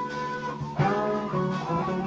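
Live band music: a guitar plays a melodic line with sustained, bending notes over drums, with a sharp drum hit just under a second in.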